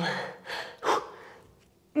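A woman breathing hard while holding a plank and doing knee-to-elbow repetitions: two short, noisy breaths, a light one about half a second in and a sharper, louder one just before the one-second mark.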